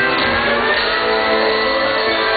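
Live country band music with guitar prominent, playing steadily and loudly.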